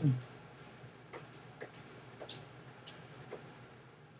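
Faint, short clicks, about six at irregular intervals, made while a handwritten matrix is erased in a computer drawing program.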